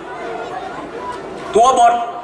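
A man's lecturing voice through a microphone: a pause of about a second and a half with only faint background sound, then a short spoken phrase near the end.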